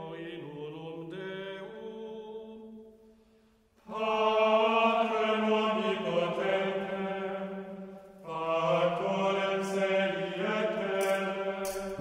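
Sung chant: voices holding long notes that step slowly from pitch to pitch. A quieter opening phrase breaks off about three seconds in, then two louder phrases follow, with a brief dip near eight seconds.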